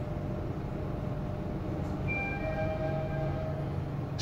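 Hyundai passenger elevator car running up one floor with a steady low hum. About halfway through, a bell-like chime of several tones rings for a second or two as the car arrives at the floor.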